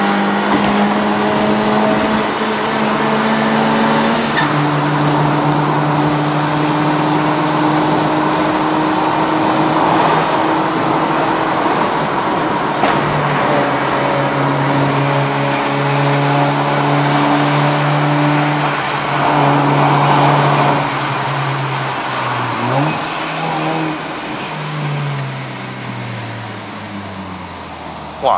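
A 2015 Honda City's 1.5-litre i-VTEC four-cylinder engine, in a car converted to a five-speed manual, heard from the cabin pulling hard at high revs. It drops in pitch with an upshift about four seconds in, holds a strong steady pull for a long stretch, then the revs fall away over the last few seconds.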